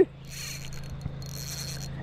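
Fishing reel being cranked in two short spells of whirring, each under a second, over a steady low hum.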